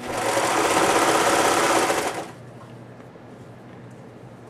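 A Baby Lock Imagine serger running at speed for about two seconds as it stitches a pair of patchwork squares, sewing the seam and finishing the edge in one pass, then stopping.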